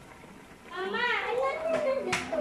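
A young child's voice, starting under a second in.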